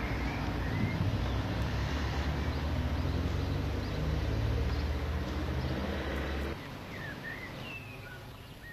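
A loud, steady low rumbling noise that cuts off abruptly about six and a half seconds in, with birds chirping over it.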